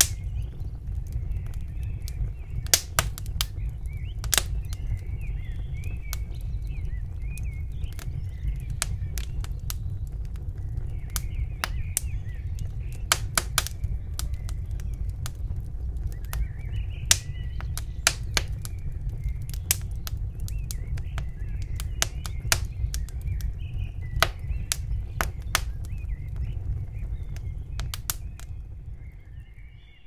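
Small birds twittering over a steady low rumble, with frequent sharp clicks scattered through; the sound fades out at the very end.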